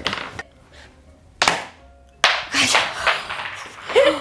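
Small balls knocking and clattering against a portable tabletop Skee-Ball ramp and its plastic scoring cups: a sharp knock about a second and a half in, then a louder clatter lasting about a second.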